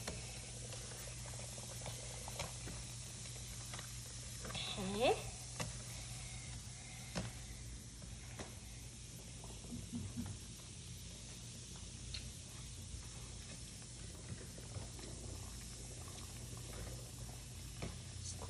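Faint fizzing and sloshing of a bath bomb dissolving in a tray of water as hands rub and squeeze it, with a few small splashes and clicks. A short voice-like sound rises briefly about five seconds in.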